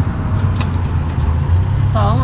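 A motor vehicle engine running close by: a low, steady rumble that grows a little louder near the end.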